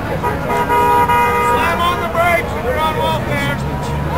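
A car horn sounding one steady note for about a second and a half near the start, over passing traffic, followed by people's voices calling out.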